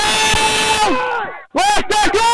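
A man's loud held shout lasting over a second, followed by two short shouts near the end: players calling out on a rugby league field.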